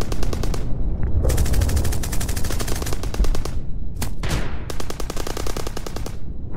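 Automatic gunfire in several long bursts of rapid, evenly spaced shots with short gaps between them, and a single shot about four seconds in.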